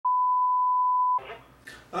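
A single steady electronic beep, one pure high tone, lasting about a second and cutting off sharply.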